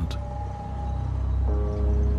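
Background music: a low sustained drone with a single held note, joined about one and a half seconds in by a chord of several held notes.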